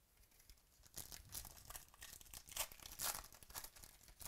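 A trading card pack's foil wrapper crinkling and tearing as it is opened by hand. A quick run of crackles starts about a second in.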